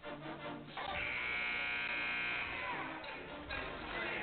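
Arena horn sounding one steady buzz for about a second and a half, signalling the timeout; just before it, the tail of a voice.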